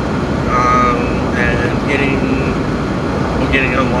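Steady engine and road noise inside a moving Jeep's cabin, with a man's voice in short snatches over it.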